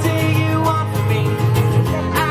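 A live song: a steel-string acoustic guitar strummed in a steady rhythm, with a man singing over it.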